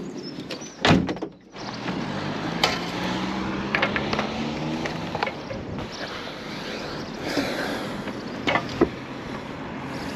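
A single heavy thump about a second in, then a steady low hum of background noise with a few scattered knocks and clicks.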